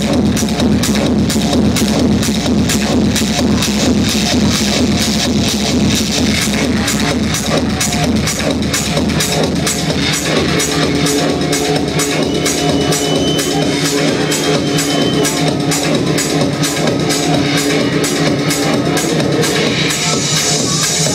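Loud techno played over a club sound system: a steady kick drum beat under synth sounds. About halfway through, a sustained synth chord comes in over the beat.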